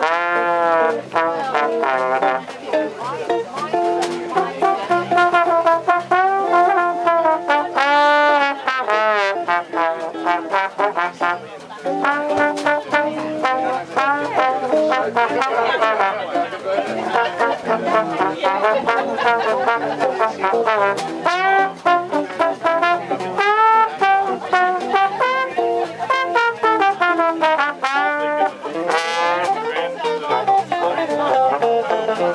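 Live 1920s-style jazz band playing an instrumental break, a trombone carrying the lead with sliding, bending notes over the band's accompaniment.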